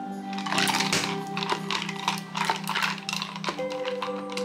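Background music with steady tones, over a run of light, irregular clicks and clinks from a plastic personal-blender cup holding ice cubes, milk and berries as it is handled.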